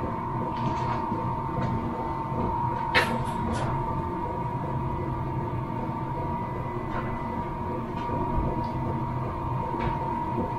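A steady high-pitched hum throughout, with a few light knocks of pine boards being handled and set against the door: a cluster about three seconds in and one more near seven seconds.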